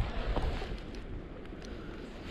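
Wind buffeting the microphone, a low rumbling noise that eases off about half a second in and then stays steady and faint.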